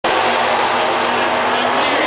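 Drag-racing cars' engines running loudly at the starting line, with tyre smoke from a burnout, mixed with a public-address announcer's voice.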